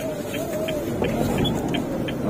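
Small car engine and CVT automatic running steadily as the Honda Brio creeps backwards in reverse, heard from inside the cabin. Faint short ticks come about twice a second over it.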